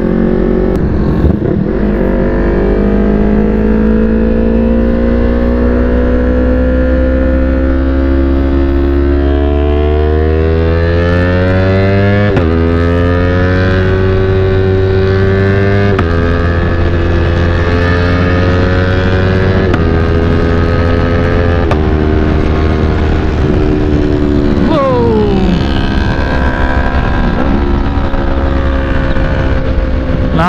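Yamaha R3's parallel-twin engine heard from onboard, revs climbing steadily and then stepping down and climbing again through several upshifts, with the note falling away as the throttle is rolled off near the end. Steady wind rush runs underneath.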